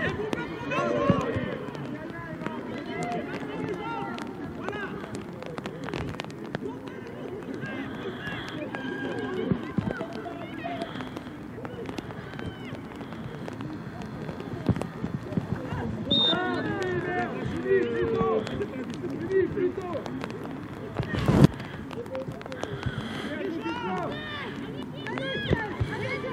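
Several voices calling and shouting over one another from the sideline and the pitch of a youth rugby match, with one sharp, loud knock near the end.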